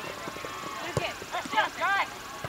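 Shouting voices calling across a grass soccer field, loudest in two rising calls near the end, with a sharp thud of a soccer ball being kicked about a second in.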